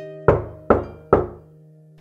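Three loud knocks on a door, evenly spaced less than half a second apart, each dying away quickly, over soft background music with long held notes.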